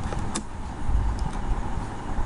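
A few sharp computer mouse and keyboard clicks over steady room hiss and a faint hum, with a low thud about a second in.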